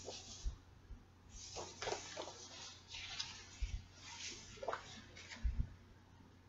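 Paper rustling in several short swishes as a large booklet is handled and its pages opened out, with a couple of soft low bumps.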